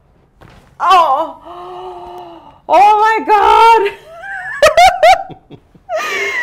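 A woman's drawn-out wordless cries and moans as her neck is adjusted in a traction strap, turning into laughter, with a few sharp clicks just before the laugh.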